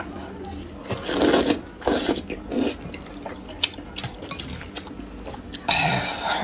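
Close-miked eating of saucy spicy noodles: a few wet slurps in the first half, then smaller wet mouth clicks from chewing, and another slurp near the end.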